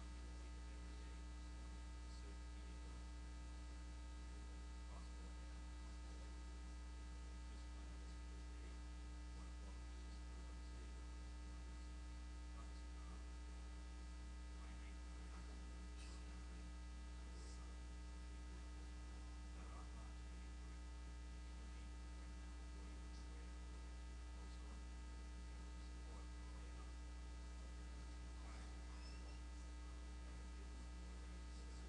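Steady electrical mains hum at a low level, a deep buzz with a ladder of overtones, with a few faint scattered ticks.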